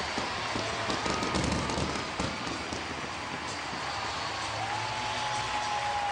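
Ballpark crowd cheering steadily after a home run.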